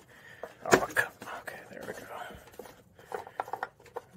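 An oil filler cap being twisted and pulled off a 5.7 HEMI engine: a few sharp plastic clicks about a second in, then lighter clicks and rubbing near the end.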